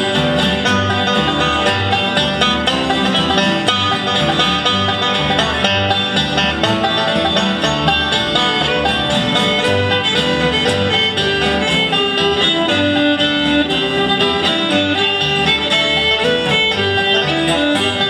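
Bluegrass gospel band playing an instrumental break between verses, with no singing: fiddle, strummed and picked acoustic guitars and upright bass.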